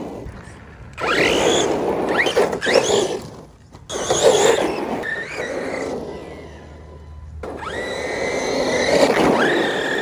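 Redcat Kaiju RC monster truck's brushless electric motor whining up in pitch in several bursts of throttle, with lulls between. The last burst near the end is held longer. Tyre noise on wet pavement runs under the motor as the truck slides and drifts.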